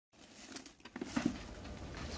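Plastic-wrapped black liner sheeting being handled and pulled out of a pile: rustling and crinkling of plastic film with a few light knocks about a second in.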